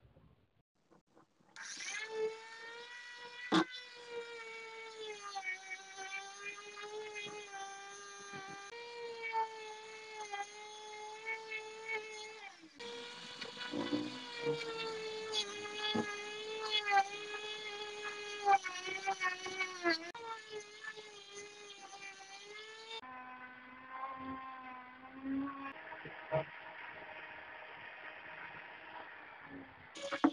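Small handheld electric rotary tool with a wire brush attachment running at high speed against rusted steel parts of a vintage greens cutter, stripping the rust. It gives a steady high whine that starts a second or two in, with the pitch wavering and dipping as the brush works, and a sharp click a few seconds in.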